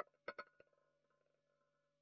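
Roulette ball clicking against the pocket separators of an automatic roulette wheel as it settles, a few short clicks in the first half-second, then near silence.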